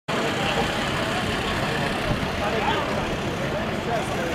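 A steady rumbling noise with faint voices calling in the distance.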